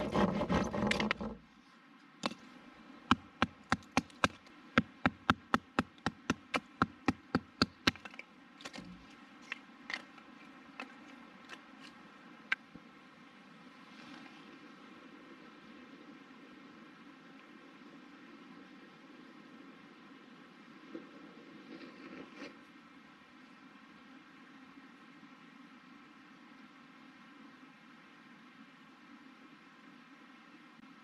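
A brief burst of handling noise, then a run of about twenty sharp clicks, roughly three a second, as a light is struck for a small wood fire; a few more scattered clicks follow before only a faint steady background remains.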